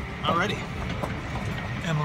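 Golf cart driving along, a steady low rumble of the moving cart. A short bit of a man's voice comes in near the start.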